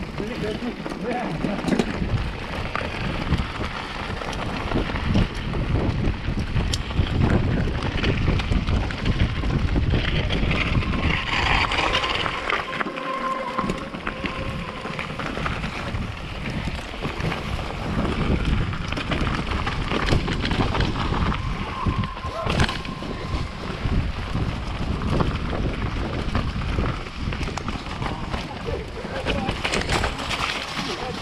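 Mountain bike riding a rough dirt forest trail: tyre rumble and rattle from the bike, with wind buffeting the handlebar-mounted microphone. Two brief high tones stand out, once near the middle and again a little later.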